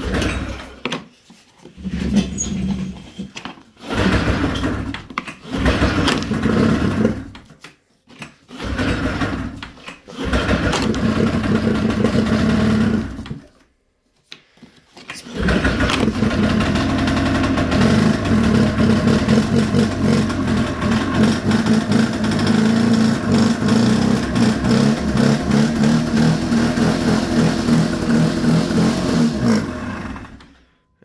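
1999 Arctic Cat ZR500 EFI snowmobile's two-stroke twin firing on fuel poured down its throttle bodies, with its injectors not working. It fires in several short bursts that die out, then about halfway through catches and runs steadily until it cuts off near the end.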